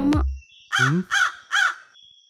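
A crow cawing three times in quick succession, each caw short and harsh.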